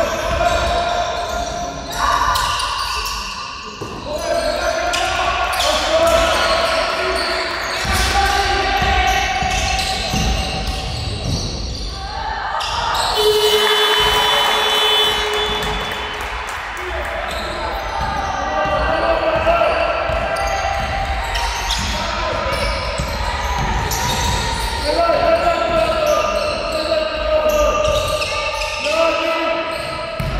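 A basketball dribbled on a wooden hall floor, with voices calling out, all echoing in a large sports hall.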